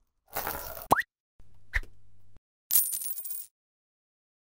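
Animated logo sound effects: a whoosh ending in a quick rising pop, then a low hum with a short blip, then a brief high sparkling shimmer.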